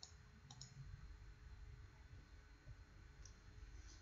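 Faint computer mouse clicks: two in the first second and two more in the last second, over a faint low rumble of room noise.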